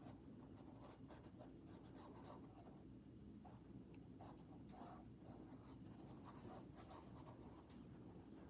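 Faint, scratchy strokes of a thin paintbrush dragging acrylic paint across canvas, short and irregular.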